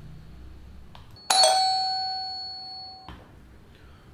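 Doorbell ringing: one bright chime starts suddenly about a second in, holds and fades for nearly two seconds, then cuts off sharply.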